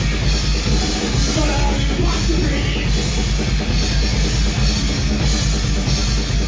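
Live punk rock band playing loud: distorted electric guitars, bass and a drum kit driving a fast, steady beat.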